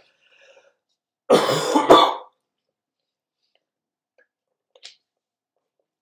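A man's single loud, breathy laugh of about a second, harsh and cough-like from a hoarse voice, followed by a faint tick near the end.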